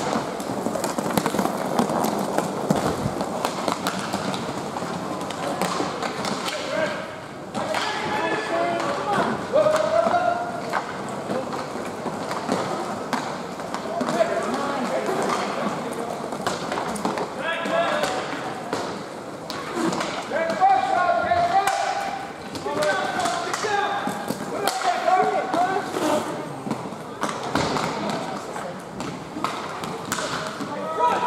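Indistinct voices calling out during an inline hockey game, with scattered knocks and taps of sticks and puck on the rink floor and boards.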